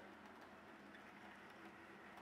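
Near silence, with only the faint, steady running of an OO gauge model train, a Hornby Class 60 with a central can motor hauling container wagons over the track, running smoothly.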